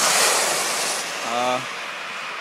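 A rush of wind noise on the microphone for about a second, then a brief voiced 'äh' from a man.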